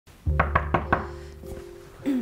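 Four quick knocks on a door, evenly spaced, over background music with a steady low bass.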